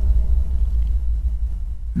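Cinematic sub-impact sound effect: a very deep, reverberant rumble, the tail of the hit, slowly dying away.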